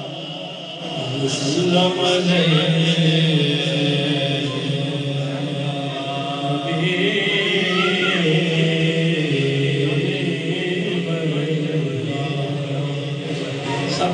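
A naat sung by a solo male voice over a microphone and PA, unaccompanied, in long drawn-out melodic lines whose held notes glide up and down in pitch.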